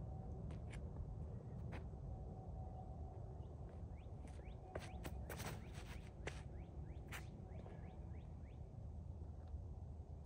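Low wind noise on the microphone with faint, repeated bird chirps, and a few scuffs and footfalls on the concrete tee pad as a disc golfer runs up and throws a disc, the loudest of them around the middle.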